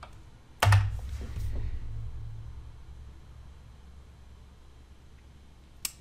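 A single hard keystroke on a computer keyboard, a sharp knock about half a second in, followed by a low hum that fades away over a few seconds; a faint click near the end.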